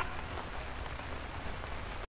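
Soft, steady rain ambience, an even hiss of falling rain, left on its own after the music and voice have stopped.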